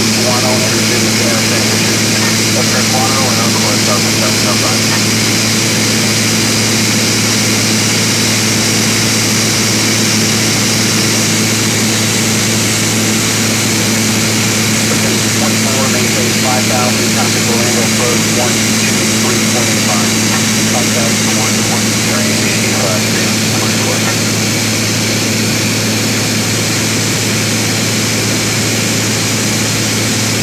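Cabin noise of a private aircraft in flight: a steady engine and propeller drone with a constant low hum.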